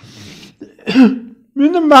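A man clears his throat once with a short, loud, cough-like rasp about a second in, after a faint breath. Then he starts speaking.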